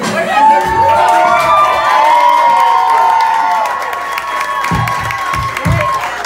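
Restaurant audience cheering and whooping, many voices holding high 'woo' calls over one another, with some clapping.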